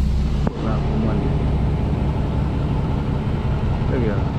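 Semi truck's diesel engine running steadily as the truck pulls off, heard from inside the cab; the sound changes abruptly about half a second in.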